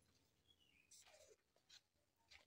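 Near silence: room tone, with a few very faint sounds about a second in.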